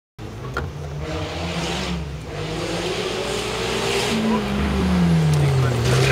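Engine of a Volkswagen-engined Lotus hill-climb car approaching, getting louder, with its note falling steadily over the last two seconds as it nears the hairpin.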